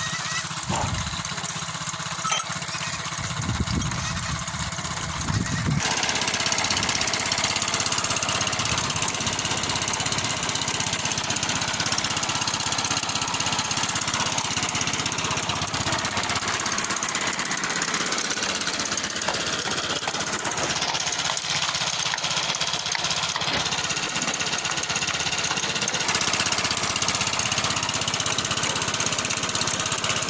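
Motorcycle engine running steadily, driving a well pump through its rear wheel to pull water. The sound grows louder from about six seconds in.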